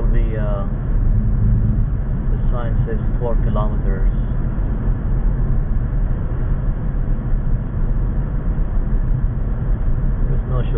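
Steady low rumble of a car's engine and tyres on the road, heard from inside the cabin while driving through a road tunnel.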